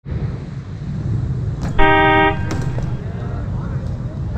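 Street traffic rumble with a vehicle horn sounding once, a steady note lasting about half a second, about two seconds in.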